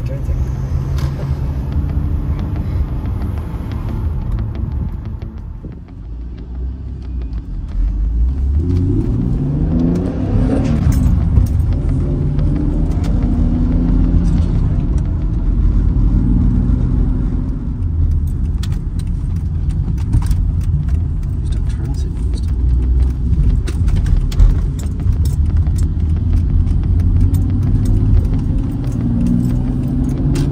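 BMW E83 X3's engine heard from inside the cabin while driving: running low, then rising in pitch as the car accelerates through a gear about eight to eleven seconds in, then running steadily with small changes in pitch.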